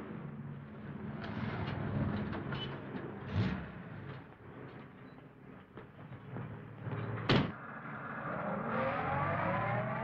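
Steady low hum of an old film soundtrack with faint muffled background sounds, and one sharp knock about seven seconds in.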